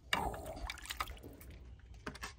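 Water sloshing and dripping in a bowl as a hand moves quartered rabbit meat soaking in it, loudest just after the start and then settling to small drips and splashes.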